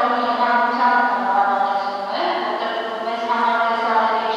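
A woman speaking loudly and emphatically in Armenian, her voice drawn out on long, held tones.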